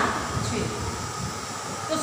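A woman's voice trails off at the start, then a steady low rumbling background noise fills the pause.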